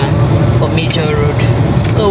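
A woman talking, over a steady low rumble in a car cabin.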